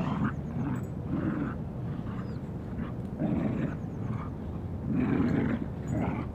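Dogs play-growling in rough, low bouts of about a second each while wrestling, four or so bouts.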